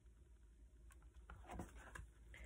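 Near silence, then faint rustling and light taps of a picture book's page being turned by hand, in the second half.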